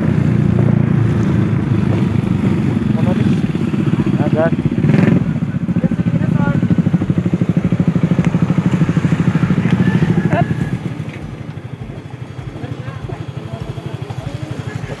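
Motorcycle engine running while riding, a close, rapid, even pulse. About ten seconds in it falls to a quieter, slower idle as the bike comes to a stop.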